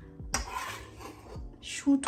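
A serving spoon scraping and clinking against a saucepan as pieces of chicken curry are scooped out, starting with a sharp knock about a third of a second in and running for about a second. A voice starts "I am so" right at the end.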